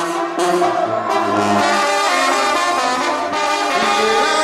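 Banda sinaloense playing an instrumental passage between sung lines: trombones, trumpets and clarinets over a sousaphone bass line that comes in about half a second in.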